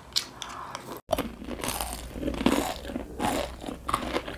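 Close-miked biting and chewing of crunchy food, with irregular crisp crunches. The sound breaks off for an instant about a second in, where two clips are spliced together.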